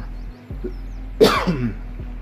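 A man coughs once, a short sharp cough a little over a second in, over a steady low hum.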